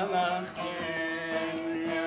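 A bağlama (long-necked Turkish saz) being played, with a man singing a Niğde folk song (türkü) over it. One long note is held from about half a second in to the end.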